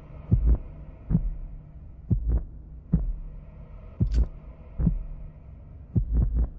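Heartbeat sound effect: slow low thumps, some in pairs, about once a second, over a steady low hum.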